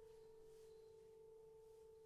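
A faint piano note held and slowly fading: one steady tone with a weak higher overtone, left ringing between phrases of a slow piece.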